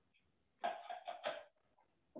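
A person coughing: three quick coughs in a row about half a second in.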